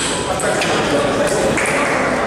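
Table tennis ball striking paddles and table during a rally, a few sharp clicks.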